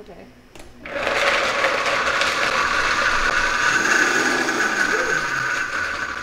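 Large countertop blender starting up about a second in and then running steadily, blending a small batch of cashews in a little water.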